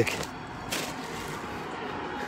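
Steady outdoor background noise, with one short rustle of handling about three quarters of a second in.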